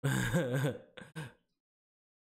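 A man's short laugh: one voiced burst, then two quick chuckles, over within about a second and a half.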